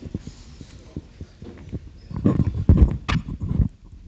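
A run of low thumps and knocks, loudest in the second half, with a sharp click about three seconds in.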